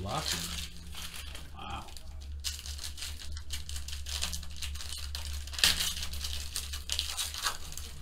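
Foil trading-card pack wrappers crinkling and tearing as packs are opened by hand, in irregular crackly bursts, with the cards handled in between.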